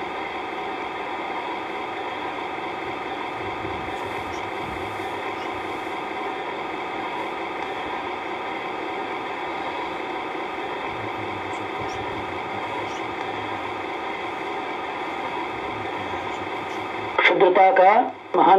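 A steady, unchanging hum made of many even tones, like a running motor. A man's voice comes in just before the end.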